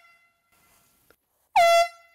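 Canned air horn on a tripwire bear alarm, set off by the trip line: a short, loud blast about one and a half seconds in, its pitch dipping briefly at the start before holding steady. In the first second, the ringing tail of the blast just before fades out.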